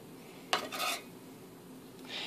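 A metal serving utensil clinks against a pan about half a second in, then scrapes briefly as a scoop of rice is lifted onto a plate of greens.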